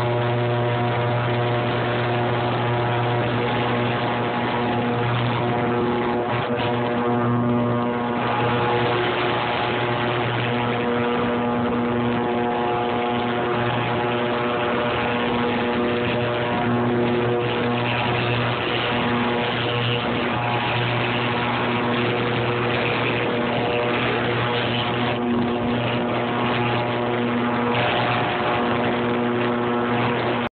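Harbor Freight ultrasonic cleaner running with a 50/50 water and Mean Green bath: a steady low buzzing hum with a constant hiss over it.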